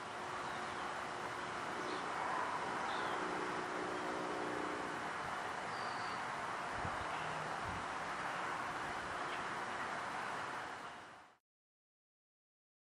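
Steady background hiss of ambient noise, with two faint low thumps about seven seconds in. It cuts off abruptly about a second before the end.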